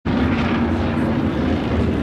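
Engines of a pack of winged sprint cars running together in a steady, loud drone as the field rolls in formation behind the pace truck.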